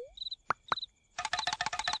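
Cartoon sound effects: two quick plops about half a second in, then a fast rattling trill near the end, over crickets chirping in the background.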